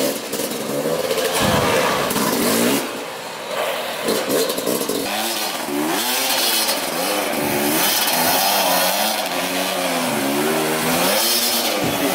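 Yamaha dirt bike engine revving up and down over and over, its pitch rising and falling every second or so.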